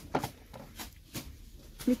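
Light handling noise: a few soft clicks and rustles as a plastic glue bottle is set back on a store shelf, over a faint low background hum.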